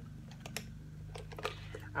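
A few light clicks and taps of small items knocking together as a hand rummages in a bag, over the steady low drone of a lawn mower running in the background.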